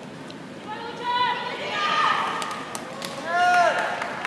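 Voices in a sports arena shouting cheers: drawn-out calls that rise and fall in pitch, the loudest a long arched call near the end, with a few sharp claps among them.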